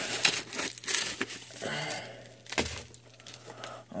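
Packaging crinkling and rustling as hands dig into a mailed package, with dense crackles loudest in the first two seconds and a sharp click a little past halfway.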